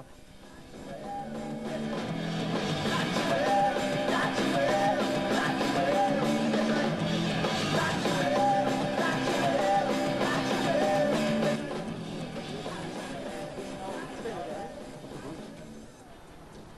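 Power-rock band playing: electric guitars, bass and drums with a singer. The music fades in over the first couple of seconds, drops lower about twelve seconds in, and fades out toward the end.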